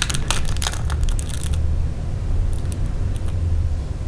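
Sharp clicks and cracks of a quail eggshell being cut open with a clear plastic quail-egg cutter: a quick run in the first second and a half, then a few fainter clicks, over a steady low hum.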